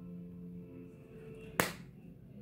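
Faint background music with held notes that fade out, then a single sharp snap of the card deck being handled about one and a half seconds in.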